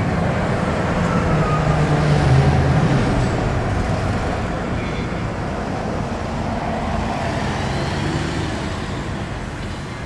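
Car driving along a street, its engine and tyre noise heard from inside the cabin, swelling a couple of seconds in and then slowly easing off.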